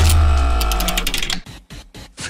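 Short electronic transition sting: a deep boom under a held synth chord with rapid high ticking, fading out about one and a half seconds in.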